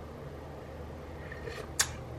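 A single sharp metal clink near the end, a utensil striking a cooking pot of simmering chili, over a steady low background hum.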